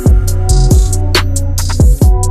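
Background music with a drum-machine beat: booming low kicks that drop in pitch about four times, crisp high percussion hits, and a steady bass line.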